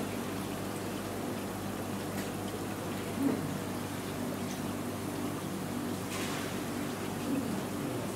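Steady hum of aquarium aeration and pump equipment with the trickle of air bubbling up through the display tanks, and a couple of brief faint noises about three and six seconds in.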